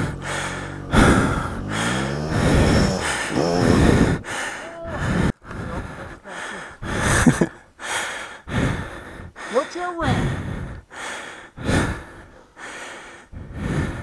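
Heavy panting close to the microphone, about a breath a second. Behind it a dirt bike engine revs up and down as the bike climbs a steep slope, most clearly in the first four seconds and again about ten seconds in.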